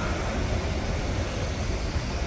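Steady road traffic noise from the street, a continuous low rumble with no distinct events.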